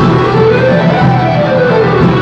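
A string ensemble of violins and cellos playing together with a plucked guitar, its melody sweeping up and falling back about once a second.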